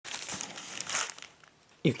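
Thin disposable plastic gloves crinkling as gloved hands pick up and handle a paper milk carton, an irregular rustle lasting about a second and a half and stopping shortly before a voice begins.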